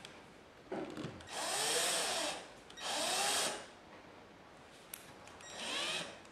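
Cordless drill-driver run in several short bursts at a flush-mounted wall socket box, a brief one about a second in and then two longer runs of about a second each, with another starting near the end. Its motor whine rises and falls in pitch with each squeeze of the trigger.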